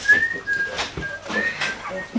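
A person whistling a string of short notes, the first rising and the rest mostly held level, with talking and a few light knocks underneath.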